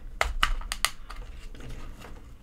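Several sharp clicks and knocks in the first second, then quieter handling noise, as a shielded ethernet wall jack is forced into an electrical box against a stiff CAT7 cable.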